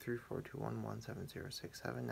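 Speech: a young man reciting the digits of pi aloud, one short syllable after another at an even pace.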